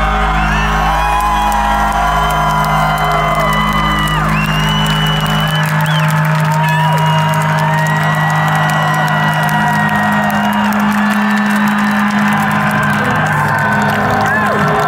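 Rock band's last chord ringing out through the guitar amplifiers as long held tones, the lowest drone cutting off about halfway through, while a large crowd cheers, whoops and whistles.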